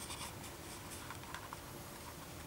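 Faint rustling and scraping of hands on a handheld camcorder as it is carried and moved, with a burst of soft clicks at the start and a few scattered ticks about a second in.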